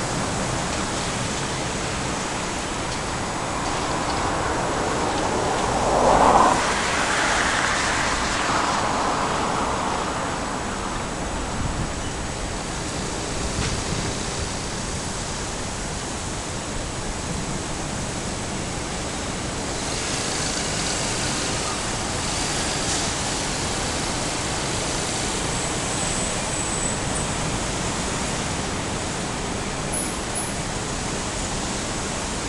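Steady wash of road traffic noise, with one vehicle passing louder about six seconds in.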